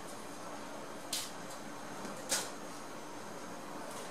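Two brief, soft scraping sounds, about a second in and just past two seconds, over a faint steady hiss: metal tweezers picking up half-pearls and pressing them onto a strip of interlon foam.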